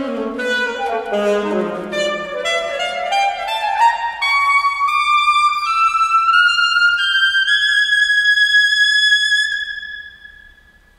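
Alto saxophone playing a solo passage: a quick descending run of notes, then a line of notes rising step by step up into its highest register, ending on a long held high note that fades away near the end.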